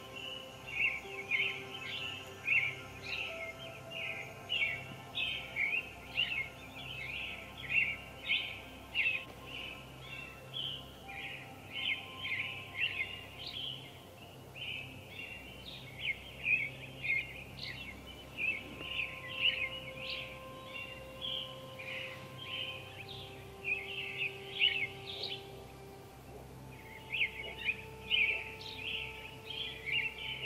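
Many birds chirping and singing at once, short calls overlapping continuously, with a brief lull about four seconds before the end.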